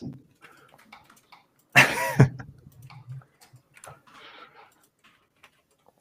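Scattered computer mouse and keyboard clicks from live 3D modelling, with one short vocal sound, falling in pitch, about two seconds in.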